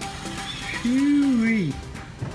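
A drawn-out wordless vocal sound about a second in, rising then falling in pitch for under a second.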